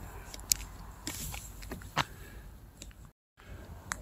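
Phone being handled as its camera is flipped round to face the user: scattered clicks and faint rustling. The sound cuts out completely for a moment just after three seconds, as the recording switches cameras.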